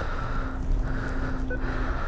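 Kawasaki sportbike engine idling with a steady low rumble, and a single short beep from the ATM keypad or touchscreen about one and a half seconds in.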